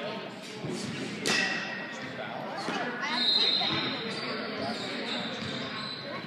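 Indistinct voices in a large, echoing indoor hall, with a single sharp thud about a second in that rings on briefly.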